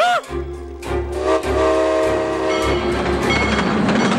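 Cartoon sound effects of a freight train passing close by: a low rumble, a horn blast lasting about a second near the middle, and wheels clattering rapidly, over background music. It opens with a brief, sharp, startled cry.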